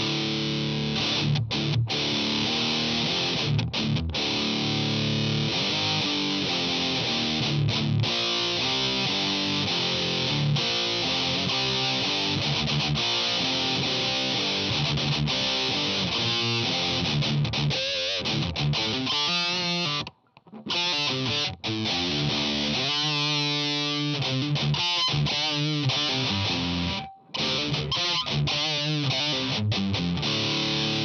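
Electric guitar played through a Boss Metal Zone distortion pedal into a Dumble-style clean amp simulator (ML Soundlab Humble), giving a heavily distorted tone. He plays a continuous passage of chords and single notes, broken by two short stops, one about twenty seconds in and one near the end.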